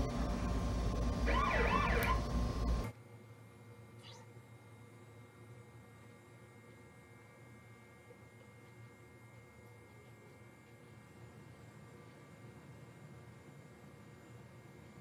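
Cartoon soundtrack from a television's speaker, with a wavering siren-like wail, for about the first three seconds. It cuts off suddenly, leaving only a faint steady low hum.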